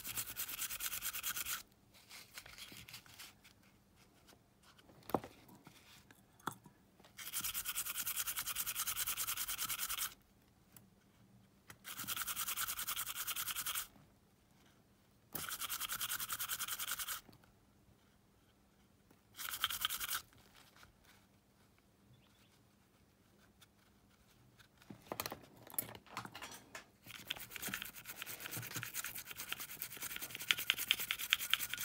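A small brush scrubbing the drive motor of a Sony Walkman cassette mechanism. It comes in bursts of rapid back-and-forth strokes, each one to three seconds long, with pauses between them and lighter, irregular scratching near the end.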